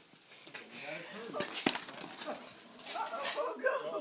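Scattered voices and laughter of a family, with two sharp knocks about a second and a half in.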